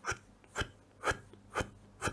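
Fineliner pen drawing on paper in short scratchy strokes, about two a second.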